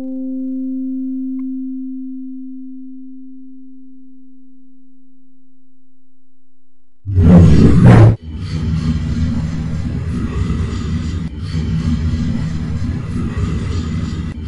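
Computer-generated sound effects. A steady electronic tone with a short chime-like start fades away over the first several seconds. About seven seconds in, a sudden loud noisy burst breaks in, followed by a dense, low rumbling noise.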